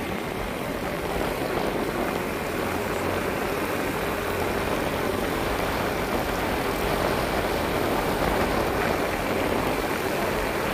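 Motorbike engine running steadily at cruising speed, mixed with an even rush of wind and road noise from riding.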